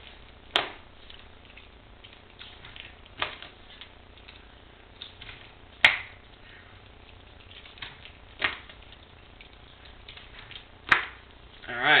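Sock poi being spun through repeated spiral wraps: a sharp slap about every two and a half seconds, five in all, as the hands come together and the poi wind up and are whacked back, with faint movement noise between.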